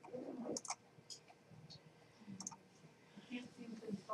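Faint computer mouse clicks: a quick double click about half a second in, a single click a little later, and another double click past two seconds.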